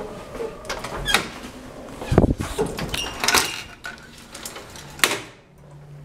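Clicks, knocks and rattles of an old elevator's collapsible scissor gate and door being handled, with a heavier thump about two seconds in.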